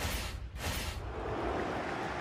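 Logo-sting sound effect: two quick swooshes in the first second over a deep low rumble, then a sustained noisy swell.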